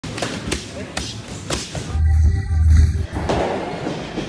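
Boxing gloves punching focus mitts: several sharp smacks about half a second apart, then a louder, deeper thudding stretch.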